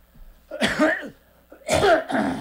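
A man coughing twice into his fist, the second cough louder.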